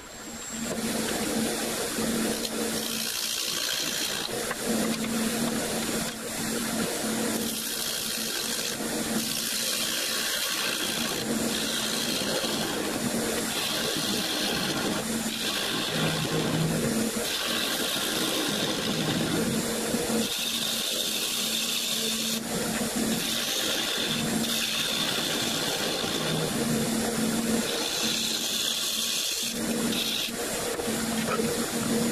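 Wood lathe spinning a silver maple box blank while a gouge hollows its inside: a steady rushing hiss of cutting, with a low hum and a brighter tone that come and go every second or two.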